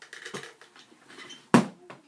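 Handling noise as a saxophone case is fetched: soft rustles and small clicks, then one sharp knock about one and a half seconds in as the case is put down.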